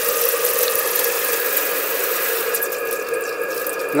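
Maxwell Hemmens Max 11 model steam engine running steadily on steam at a gentle 30 psi, a continuous hissing rush from the engine and its loud boiler.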